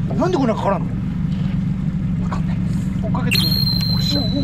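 Small fishing boat's engine idling steadily, a low even hum. About three seconds in, a sudden steady high-pitched tone comes in over it.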